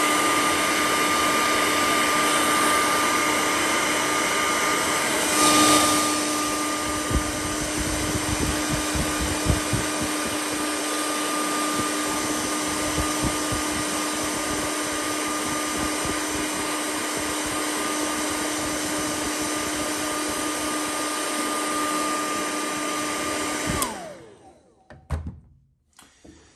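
Hair dryer running steadily, blowing air into the vent hole of a tail light to dry out condensation inside it. Its motor hum holds one pitch, swells briefly about six seconds in, and it is switched off about two seconds before the end, winding down.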